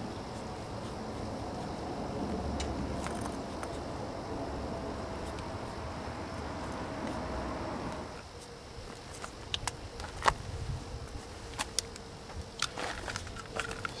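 A steady buzzing hum, its faint tone sliding slowly lower, that stops about eight seconds in; after it come scattered light clicks and taps.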